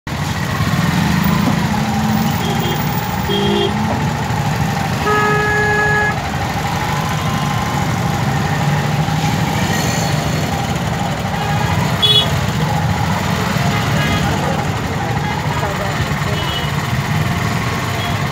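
Gridlocked street traffic, with engines of motorbikes, auto-rickshaws and cars running at a standstill in a steady low rumble. Vehicle horns honk now and then: short toots early on and one longer horn blast about five seconds in.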